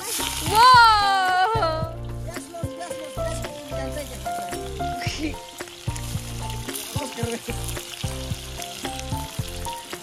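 Food frying with a steady sizzle as ingredients are tipped from a banana leaf into a hot wok over a wood fire. A brief loud voice-like exclamation comes near the start, and background music plays throughout.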